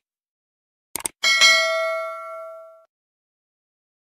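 Subscribe-button animation sound effect: two quick mouse clicks about a second in, then a bright notification-bell ding that rings out and fades over about a second and a half.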